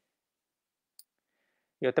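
A single short, faint click about a second in, in otherwise silence; a man starts speaking just before the end.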